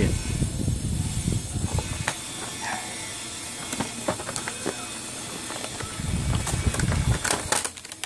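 Cardboard headphone box being handled and opened by hand: heavy low rumbles of handling in the first two seconds and again about six seconds in, with scattered clicks and scrapes of the cardboard flaps.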